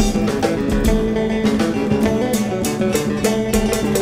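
Live band music: guitar lines over a steady drum-kit beat.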